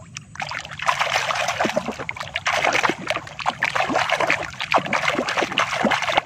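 Muddy puddle water splashing and sloshing as a hand scrubs a plastic toy back and forth in it: quick, continuous splashing that starts about a second in.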